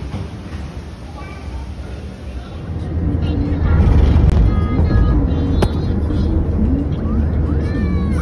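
Steady low rumble of a car being driven, heard from inside the cabin, growing louder about three seconds in. High, gliding vocal sounds run over it, with a few rising-and-falling notes near the end.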